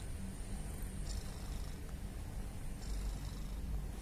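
Domestic cat purring steadily, a low continuous rumble.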